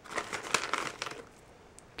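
Crinkling of a plastic snack bag, a quick run of rustles as a vegetable snack is taken out of it, dying away after about a second.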